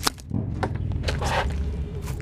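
Knocks and rustling from a camera being handled and repositioned, over a steady low hum.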